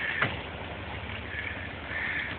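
Dodge pickup truck's engine running steadily under load at a distance, towing a heavy red oak log uphill on a chain. A brief falling sound stands out about a quarter second in.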